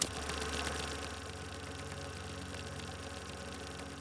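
A steady hiss over a low hum with a fast, even flutter, slowly getting quieter: an editing sound effect laid under a title card.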